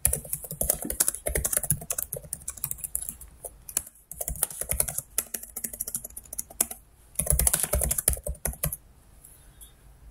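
Typing on a computer keyboard: quick runs of keystrokes with brief pauses about four and seven seconds in, a dense run from about seven to eight and a half seconds in, then only scattered taps near the end.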